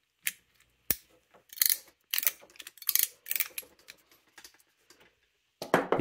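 RJ45 crimping tool pressing a plug onto a network cable: one sharp click about a second in, then a run of short, scratchy mechanical clicks over the next few seconds as the tool is worked.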